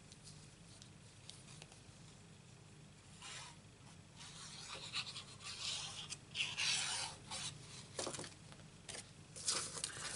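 Paper and card stock rubbing and scraping as a glued white panel is handled and pressed into a card. About three seconds of quiet, then a run of short rubbing strokes with a couple of light taps.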